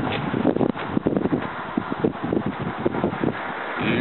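Wind buffeting the microphone outdoors, an uneven rumbling rustle with irregular gusts and no steady tone.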